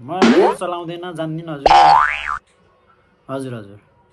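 Cartoon-style comedy sound effects over a man's voice: a quick rising glide near the start, then a louder boing-like effect about halfway through whose pitch swoops up and back down before cutting off.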